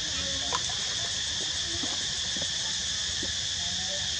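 Steady, high-pitched drone of insects, unbroken throughout, with a single faint click about half a second in.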